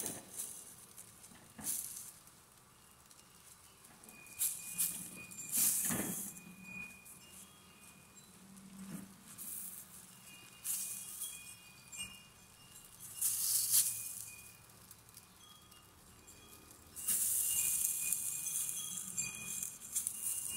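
Silicone spatula stirring a thick rice and egg mixture in a stainless steel pot: irregular soft scraping strokes with quiet gaps between them, and a longer stretch of continuous stirring near the end.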